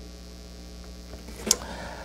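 Steady low electrical mains hum, with one short click about one and a half seconds in.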